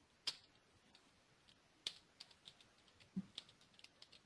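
Faint typing on a computer keyboard: scattered key clicks, sparse at first and coming quicker in the second half, with a few sharper strokes.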